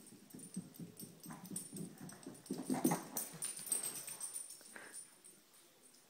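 A Yorkshire terrier makes soft, quick, irregular sounds while holding a ball in its mouth, loudest about three seconds in and dying away near the end.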